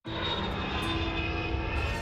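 Steady aircraft engine drone with a faint high whine, starting abruptly at the very beginning.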